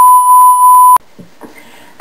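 Censor bleep: one steady, high-pitched beep tone dubbed over a spoken word, cutting off suddenly about a second in. Faint quiet sound follows.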